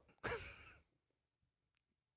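A man's short breathy exhale, like a sigh, lasting about half a second and fading out.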